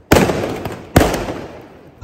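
Firecrackers going off: two sharp, loud bangs about a second apart, each dying away over most of a second.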